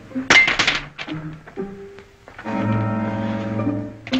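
Orchestral film score holding sustained chords. The music is broken about half a second in by a loud, sharp clink with a ringing edge, then fades to a quieter passage before the chords come back.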